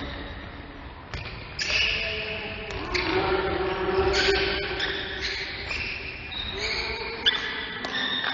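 Live basketball play on a hardwood gym floor: the ball bounces with a series of sharp knocks, the loudest near the end, amid short high squeaks and voices in the echoing hall.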